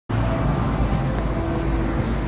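Instrumental karaoke backing track playing: sustained notes over a dense, steady bass.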